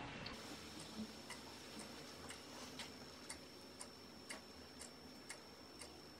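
Faint regular ticking, about two ticks a second, with a faint steady high-pitched whine underneath.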